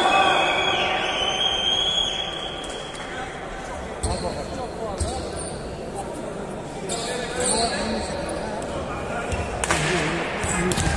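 Volleyball bounced on a sports-hall floor before a serve: a few separate thuds a second or two apart, with a louder hit near the end, under the voices of players and spectators in the large hall.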